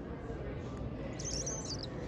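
Steady low room noise with a short burst of high, bird-like chirping lasting about two-thirds of a second, starting a little over a second in.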